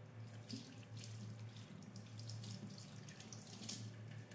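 Faint running tap water splashing irregularly as a thin stream pours over a wet kitten held in a sink basin, over a steady low hum.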